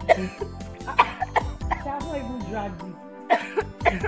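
Background music with a steady low bass line under a woman's short non-word vocal outbursts, coughs and cries, starting suddenly several times.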